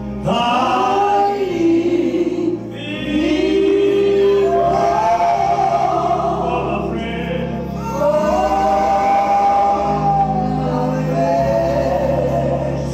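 Voices singing a gospel song together in long phrases over held low notes.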